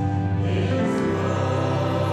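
Church choir of mixed voices singing a hymn in harmony, holding long notes that shift to a new chord about half a second in, over a steady low bass note.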